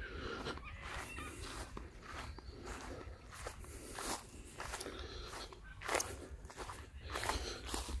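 Footsteps through grass, a soft irregular step every half second or so, over a low steady rumble.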